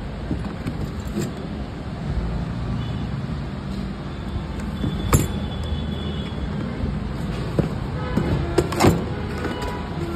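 A few sharp clicks and knocks of hands handling the hard plastic under-seat storage box and its battery-compartment cover, one about halfway through and a couple near the end, over a steady low background rumble.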